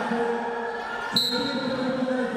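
A wrestling shoe squeaks sharply once on the mat about a second in, over steady shouting voices in a large hall.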